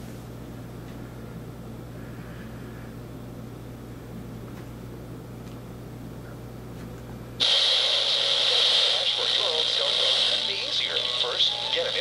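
Casio SY-4000 handheld LCD TV's small built-in speaker, still playing after being splashed with water: a low steady hum, then about seven seconds in the broadcast sound cuts in suddenly and loudly. It is a thin voice without bass from a TV commercial.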